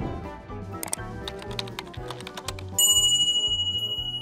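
Background music with a steady beat, with a sharp click a little under a second in, then a bright bell ding near the end that rings on and slowly fades: the sound effects of a subscribe-button animation.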